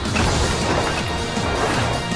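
A crashing impact sound effect hits at the start and runs on as a dense noisy rush, layered over the music score of an animated fight scene.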